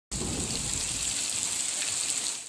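Heavy rain falling, a steady hiss, with a low rumble underneath during the first second.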